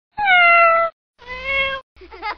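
A cat meowing twice: a first call falling in pitch, then a lower second call.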